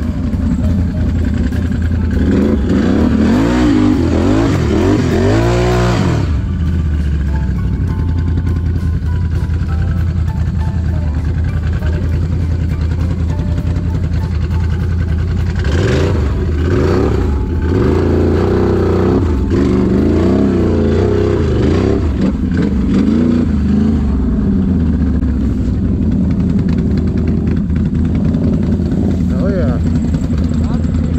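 Can-Am Renegade X mr 1000R ATV's V-twin engine running under way through mud ruts. The revs rise and fall a couple of seconds in and again about halfway through.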